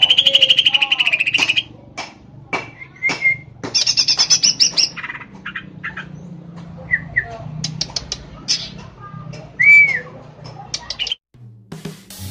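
Green leafbird (cucak ijo) singing in a varied, chattering song. It opens with a loud rapid trill, then gives scattered sharp chips, a fast high trill about four seconds in, and a single arched whistle near ten seconds. The song stops about a second before the end.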